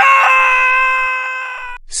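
A loud sound effect: one steady, high-pitched cry-like tone with strong overtones. It starts suddenly, holds its pitch for nearly two seconds and fades slowly before cutting off.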